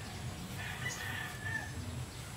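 A rooster crowing faintly: one drawn-out call lasting about a second, over a low steady background rumble.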